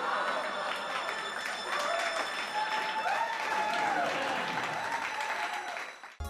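Group of people clapping, with voices calling out and laughing over the claps.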